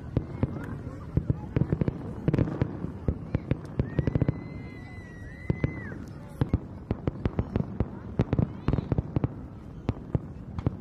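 Fireworks display: a rapid, irregular run of bangs and crackles from bursting aerial shells, several a second. About four seconds in, a steady whistle sounds for about two seconds over the bangs.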